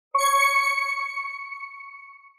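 A single bell-like chime struck once just after the start, ringing with several clear overtones and fading out over about two seconds, the higher tones dying away first.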